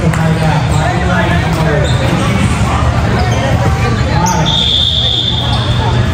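Crowd voices chattering and calling with a volleyball thudding as it is hit and bounced. About four and a half seconds in, a single steady high whistle blast lasts about a second and a half: a referee's whistle.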